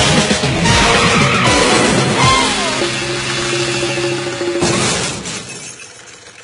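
Background music mixed with crash and shattering sound effects, the mix fading down about five seconds in.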